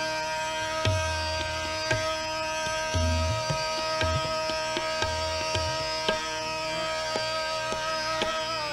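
Hindustani classical music: a single note held steady for the whole stretch over a drone, while tabla keeps the rhythm with sharp strokes and deep bass-drum strokes about every one to two seconds.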